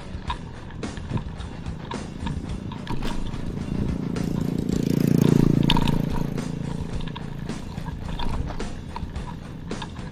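Mountain bike rattling over a rough road. A motorcycle passes close by: its engine builds to a peak about five seconds in, then fades.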